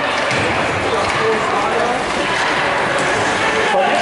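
Ice hockey game in an indoor rink: a steady wash of skates on ice and background voices of spectators and players, with occasional knocks of sticks and puck echoing in the arena.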